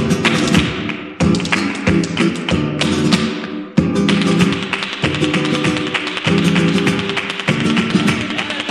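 Flamenco colombiana on an old record: Spanish guitar chords under rapid, dense percussive taps typical of zapateado footwork, with short breaks about one and four seconds in.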